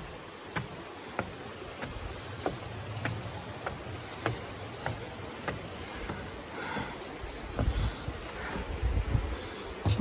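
Hiking-boot footsteps on wooden stairs and bridge planks, a light knock about every 0.6 seconds, over a steady rushing hiss of the creek and wind. Low wind buffeting on the microphone near the end.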